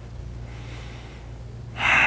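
A man's quick intake of breath near the end, before he speaks. A low steady hum runs underneath.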